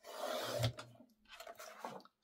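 Sliding paper trimmer's blade carriage drawn along its rail, slicing through a 12x12 sheet of patterned paper in one rasping stroke lasting under a second. Fainter paper rustling follows as the cut piece is moved.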